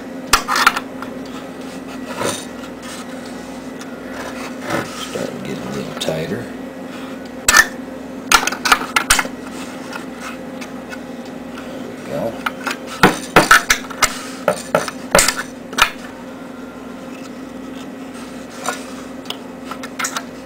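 Metal wrench clinking against the nuts and threaded steel rods of a homemade wooden press as the bolts are turned down a turn at a time. The sharp clicks come in irregular clusters over a steady low hum.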